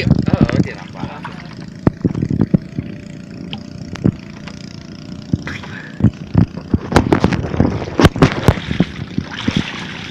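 Water sloshing and splashing around people moving and reaching about chest-deep in a lake, with scattered sharp knocks and splashes, most of them in the second half.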